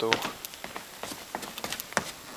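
A man's word trailing off at the very start, then scattered light clicks and taps at irregular intervals as he moves about holding the camera.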